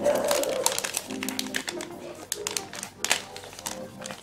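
Soft background music with notes, over a scatter of short crinkles and rustles from a trading-card pack wrapper being opened by hand.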